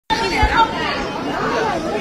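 Several people talking at once, their voices overlapping and indistinct.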